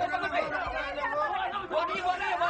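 People talking over one another, their words indistinct.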